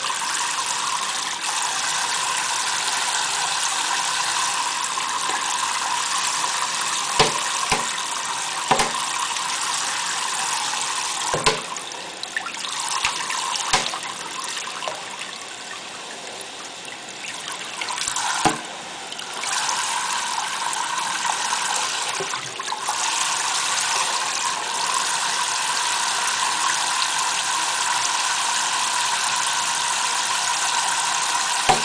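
Kitchen faucet running in a steady stream onto an African grey parrot and into a stainless steel sink. It dips quieter for several seconds midway, and a few sharp taps sound here and there.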